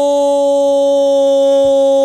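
A football radio commentator's long drawn-out "gol" cry for a goal, one loud vowel held at a steady pitch.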